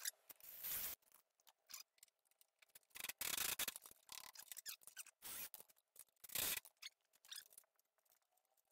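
Faint, short bursts of scraping and whirring as a Ryobi cordless drill pre-drills and drives a screw through a steel caster mounting plate into a wooden workbench leg. The louder bursts come near the middle and again near the end.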